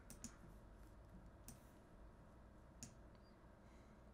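A few faint computer mouse clicks, spaced irregularly over near-silent room tone.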